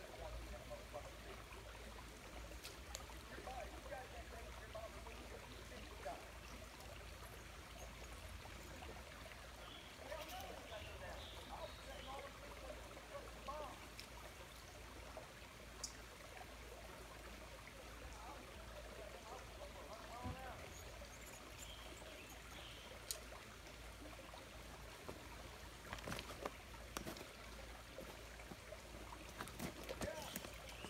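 Faint creek water trickling over rocks, with a few faint clicks.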